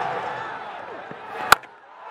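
Stadium crowd noise slowly fading, then a single sharp crack of a cricket bat striking the ball about one and a half seconds in, the shot that goes for six.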